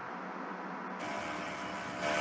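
Faint steady hiss of open-microphone background noise on a video call, getting a little louder and brighter about a second in.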